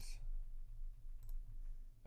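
A couple of faint computer-mouse clicks about a second in, over a low steady background rumble.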